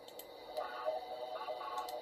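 Faint, thin audio of an online video starting to play through computer speakers, heard from across the room, with a few sharp clicks near the start and near the end as it is started and put into full screen.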